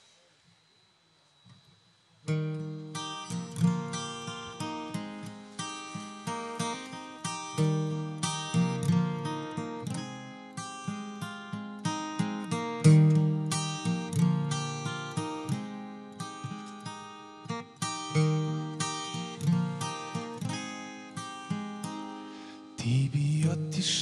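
Acoustic guitar strummed in a steady rhythm as a song's intro, starting after about two seconds of near silence; a voice starts singing near the end.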